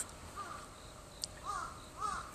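Faint bird calls, about three short arched calls spread through the pause, with a single brief click a little past halfway.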